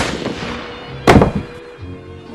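Two gunshots, one at the very start and another about a second later, each loud and sudden with a short reverberant tail, over background string music.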